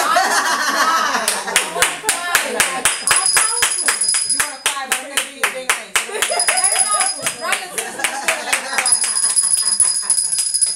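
Hands clapping in a steady rhythm, about three claps a second, starting about a second in, with women's voices over it.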